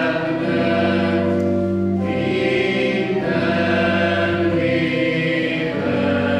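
Voices singing a church hymn in chorus, slow chords held and changing about every two seconds.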